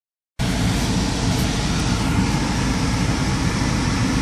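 Steady noise inside a stopped car's cabin: a low rumble with an even hiss over it, typical of an idling engine and ventilation fan. It starts abruptly about half a second in.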